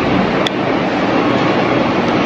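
A steady, loud rushing noise with a single sharp click about half a second in.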